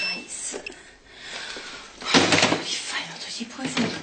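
Indistinct speech with rustling and handling noise, the voice clearest in the second half.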